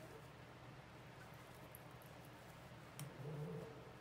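Near silence: faint room tone, with a brief soft low hum-like sound about three seconds in.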